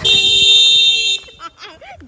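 A loud, steady electronic tone of several fixed pitches, held for about a second and then cut off, followed by a person's voice.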